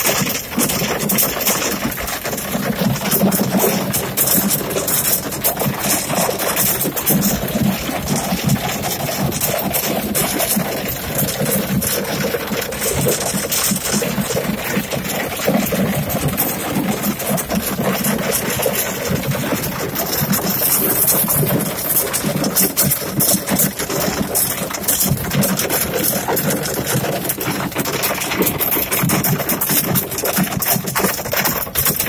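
Hail and rain pelting a car's roof and windscreen, heard from inside the cabin as a dense, continuous clatter of impacts.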